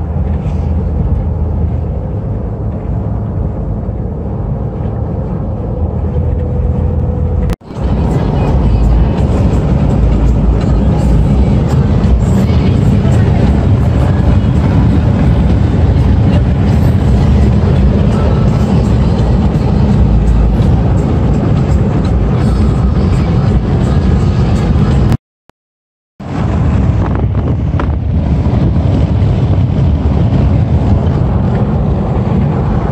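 Steady road and engine noise heard from inside a car cruising at highway speed, a low rumble. It dips briefly about a quarter of the way through and cuts out completely for about a second near the end.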